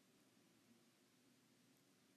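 Near silence: faint recording hiss.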